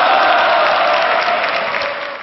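Studio audience of high-school students applauding and reacting together, the noise dying down near the end.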